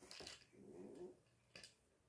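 Faint soft coo from a baby, a short vocal sound that bends in pitch, with a few small clicks as the baby handles and mouths a plastic toy.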